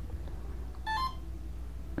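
Avian ESC on reboot sounding a short beep through the brushless motor about a second in, two quick notes stepping up in pitch, part of its restart tones after the reverse-thrust settings are saved. A low steady hum runs beneath it.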